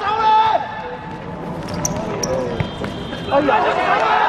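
Futsal players shouting during play, with the dull knocks of the ball being kicked and bouncing on a hard court. One shout comes at the start, and several voices shout together near the end.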